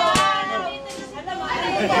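Voices talking and calling out, with a single sharp smack just after the start, a strike landing on a pad.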